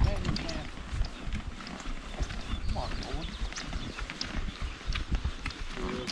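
Horse hooves on a soft, muddy dirt trail at a walk, heard close from the saddle: an irregular run of dull thuds and light clicks from the ridden horse and the horses ahead.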